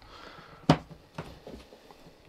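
Latches of a hard plastic flight case snapping open, with one sharp click a little under a second in and a few fainter clicks and knocks as the lid is lifted.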